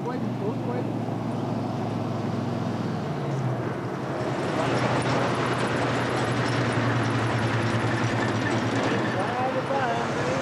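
Pickup truck engine running steadily as it drives along a dirt road, its note stepping up slightly about three seconds in, with rough tyre and road noise building after that. Voices come in near the end.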